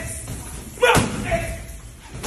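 A single heavy punch landing on a wall-mounted padded boxing bag about a second in, with a short voice-like sound after it.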